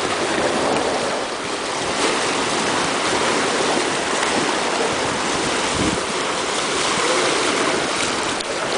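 Small waves of a calm sea washing and lapping among shoreline rocks in shallow water, a steady splashing hiss.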